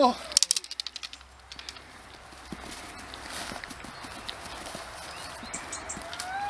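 Tug play between a Dobermann puppy and a rag tug on grass: a quick run of sharp clicks and knocks in the first second and a half, then steady rustling and scuffling as the puppy pulls.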